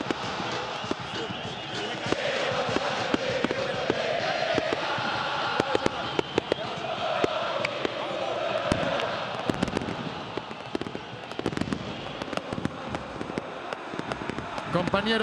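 Football stadium crowd singing a chant, with many sharp firework bangs going off throughout, most densely in the middle of the stretch.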